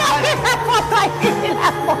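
People laughing in a string of short, quick bursts, several to a second.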